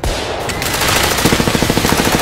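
Machine-gun fire used as a sound effect: a fast, unbroken run of shots at about fifteen a second.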